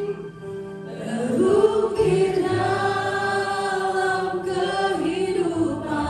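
Live worship band with a lead singer and backing vocalists singing long held notes over keyboard and guitar. The music drops back briefly in the first second, then the voices come back in.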